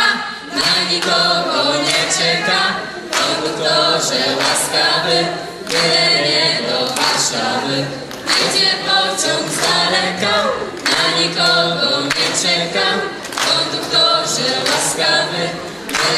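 A mixed group of young singers performing a song a cappella, two girls leading into handheld microphones with the rest of the group singing along. Hand claps keep a steady beat.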